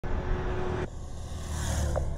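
Road traffic noise from a motor vehicle, a steady low rumble; its sound changes abruptly just under a second in.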